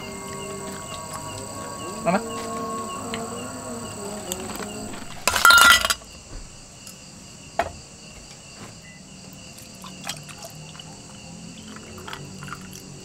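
Steady high-pitched insect chirring, with faint distant voices in the first few seconds and a short, loud burst of noise about five seconds in.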